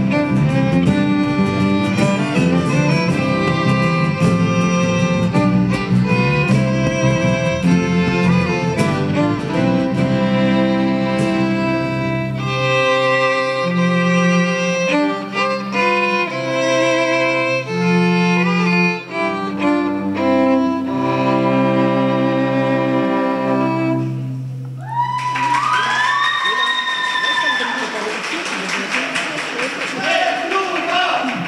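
Instrumental folk-style passage led by two violins playing the tune over sustained low accompaniment, ending about 25 seconds in. The audience then cheers and applauds, with whoops and shouts.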